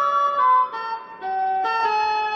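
Digital keyboard playing a single-note melody. A few short notes step downward, there is a brief pause about a second in, then a new note is held.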